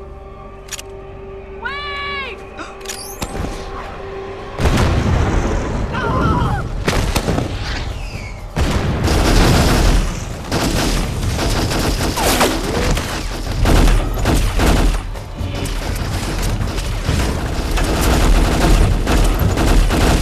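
A tense droning film score with a man's short scream, then, about four and a half seconds in, a sudden heavy barrage of rapid gunfire and booms that continues over the music.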